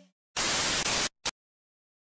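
A burst of white-noise static lasting under a second, then a very short blip of the same noise, with dead silence around both: an edited static-noise transition effect.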